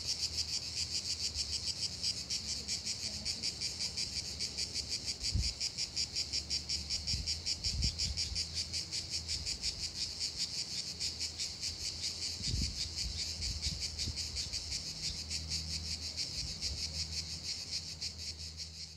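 Crickets chirping in a steady, rapid, even pulse, with a faint low hum underneath.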